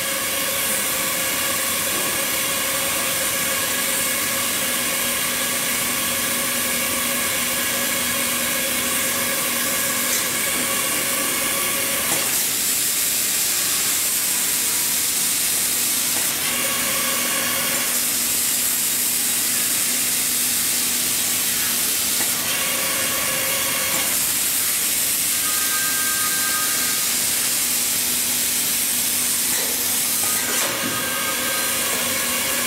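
Hightex hot air welding machine running while seaming PVC fabric: a steady, loud hiss of hot air from the welding nozzle. Under it is a steady motor whine that drops out and comes back several times.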